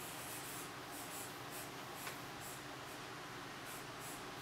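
Fingers scratching through hair, a faint scratching repeated every few tenths of a second over a steady room hiss.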